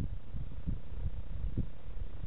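Domestic cat purring, picked up close by a camera collar's microphone at its throat: a continuous low rumble that swells about once a second with each breath.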